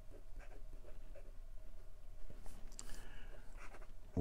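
Steel architect-grind fountain pen nib scratching faintly across paper in short, uneven strokes as a word is handwritten. The nib has a good deal of feedback.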